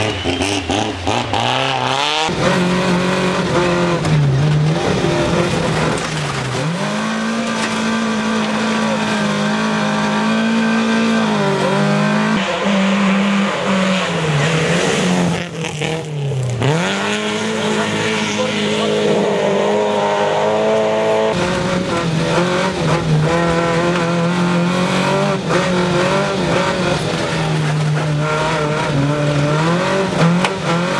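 Rally car engines run hard at high revs, the engine note dropping and climbing back several times as the drivers lift off and accelerate again through the bends, with tyre noise on the snowy surface.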